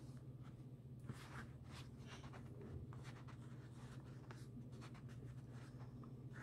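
Faint soft rustling and scratching of cotton fabric being handled, with needle and thread drawn through as a stuffed patchwork pincushion's last seam is hand-sewn closed. A low steady hum runs underneath.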